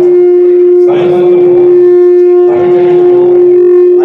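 A loud held tone at one unchanging pitch with faint overtones, sounding over the voices and stopping abruptly just after the end.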